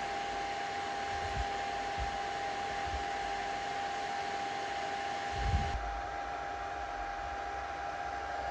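Anycubic Kobra 2 Max 3D printer's cooling fans whirring steadily, with a thin constant whine. A few faint low knocks, the strongest about five and a half seconds in.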